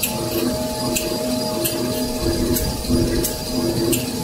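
XY-TQ-B 500 glue-laminated kitchen towel maxi roll production line running at speed. A steady mechanical hum carries a low pulsing note and a sharp click that repeat about every two-thirds of a second, the machine's working cycle.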